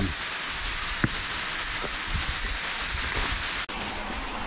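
Steady hiss of waterfall spray and dripping water splashing onto rock, with a few sharp ticks.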